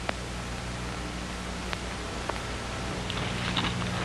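Steady hiss and low hum of an old film soundtrack, with a few faint clicks.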